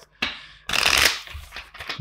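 A deck of tarot cards being shuffled by hand: a short flurry of cards sliding and flicking against each other, loudest for about half a second in the middle, then trailing off in a few light clicks.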